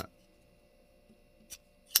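Small titanium frame-lock folding knife giving one sharp click about a second and a half in and another just before the end, as its blade is worked with the front flipper.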